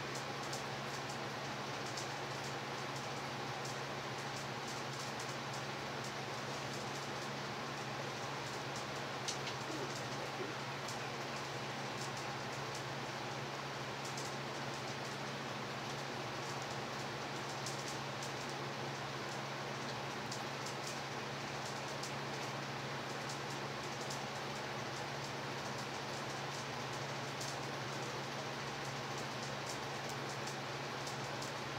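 Steady, even hiss with a constant low hum underneath and a few faint, scattered ticks.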